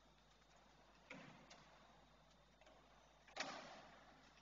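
Near-silent, reverberant church with two sudden knocks: a soft one about a second in and a louder one later, which rings on briefly in the hall.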